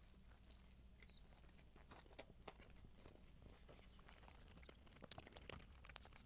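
Faint chewing of a mouthful of torta sandwich with toasted bread and breaded steak: soft, scattered small crunches and mouth clicks over a low room hum.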